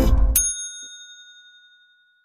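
The last strummed guitar chord of an intro jingle dies away, and a single bright bell ding sounds and fades out over about a second and a half.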